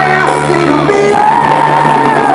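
Live cumbia band playing loudly on stage, with a singer holding one long note through the second half.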